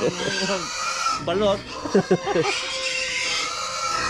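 A rooster crowing, with chickens clucking.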